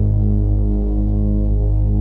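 Ambient house track: a held low synthesizer chord over a deep bass note that flickers rapidly, the chord unchanging.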